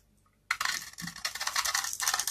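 Utility-knife blade shaving into a dry, varnished bar of soap: a dense, crisp crackle of the blade biting through the hard coating and flaking the soap. It starts about half a second in, after a brief silence.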